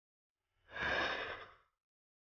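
A man sighs once, a breathy exhale lasting about a second that starts about half a second in.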